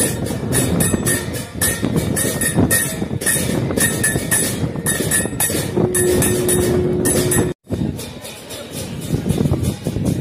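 Brass temple bells and cymbals clanging in a fast, steady rhythm of several strikes a second for an aarti lamp ritual. A single held note sounds for a couple of seconds past the middle, then the sound cuts off abruptly and comes back quieter.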